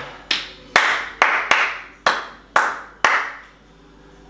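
Hands clapping seven times at about two claps a second, each clap followed by a short echo; the claps stop about three and a half seconds in.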